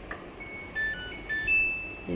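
Samsung top-load washing machine's power-on chime: a short electronic melody of quick beeping notes at changing pitches, ending on a longer, louder high note, as the machine switches on after a button press.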